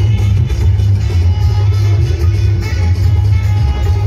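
Loud DJ music played through a large outdoor amplifier-and-speaker-stack sound system, dominated by heavy bass.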